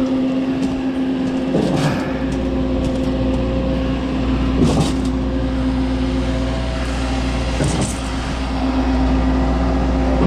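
Schwing trailer concrete pump running steadily under load, its engine giving a constant hum, with a recurring surge about every three seconds as the pump strokes concrete down the line. A deeper engine rumble joins about two seconds in.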